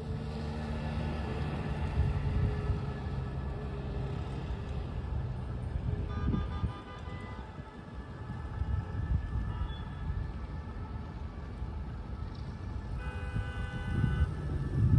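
City street traffic: motorcycle and car engines passing over a continuous low rumble of traffic, the engine note strongest in the first couple of seconds.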